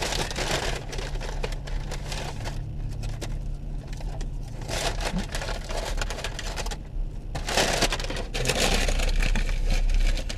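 Brown paper takeout bag rustling and crinkling as it is handled and opened, in bouts with short pauses, over a low steady hum.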